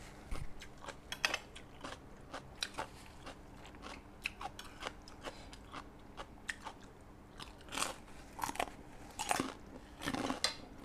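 A person chewing and crunching a mouthful of rice vermicelli and blanched vegetables, with many short, wet clicks of the mouth. Louder crunches come about a second in and again near the end.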